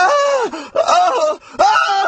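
An animated character's wordless, pained wailing cries from a voice actor: three loud, high, drawn-out wails, each bending in pitch and falling away at its end.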